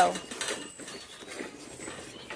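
Goats and calves eating grain feed from a galvanized metal trough: faint, irregular clicks and rattles as they feed. A woman's word ends right at the start.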